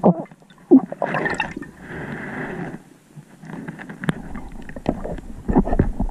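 Underwater water noise heard through a submerged camera housing: uneven gurgling and rushing of water with scattered knocks and rubs, including a sharp knock about four seconds in.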